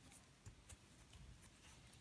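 Near silence, with faint rustling and a few small ticks from a crochet hook pulling yarn through stitches.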